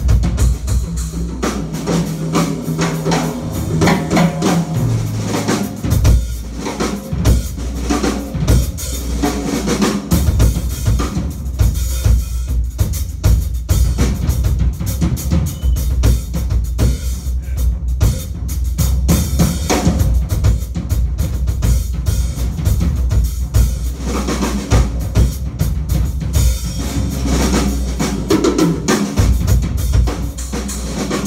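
Drum solo on a Yamaha drum kit: dense, fast strokes across snare, toms, bass drum and cymbals. Low held notes that step in pitch sit under the first few seconds before the drumming thickens.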